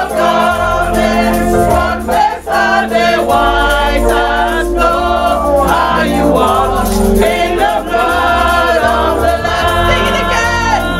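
Live gospel praise singing: a woman's amplified lead voice carries the melody over a band with a bass line, with other voices singing along.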